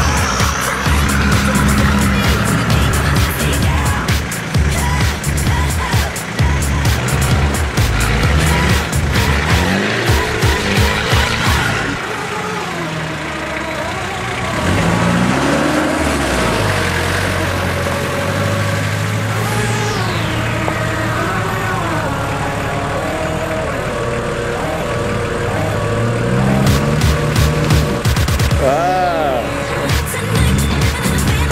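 Four-wheel-drive engine revving under load through mud and dirt, its pitch rising and falling several times, with rapid crackling clicks through the first half.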